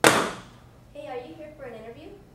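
A book tossed down onto a coffee table: one sharp, loud slap right at the start that dies away within about half a second.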